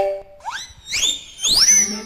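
A comedy sound effect of whistle-like upward swoops. Two quick rising glides come about half a second and a second in, then a higher swoop that rises and hangs near the end.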